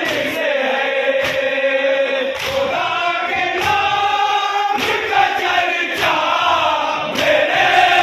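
A large group of men chanting a noha together, with their unison chest-beating (matam) landing as sharp slaps about once every second and a quarter as its beat.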